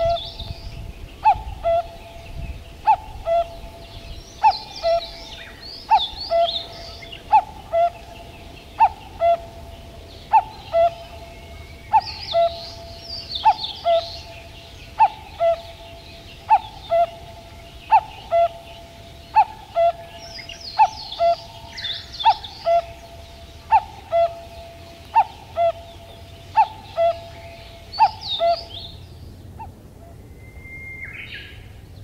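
Birds calling: one bird repeats a two-note call, a higher note dropping to a lower one, about every second and a half. Over it come bursts of higher, quicker chirping song from other small birds.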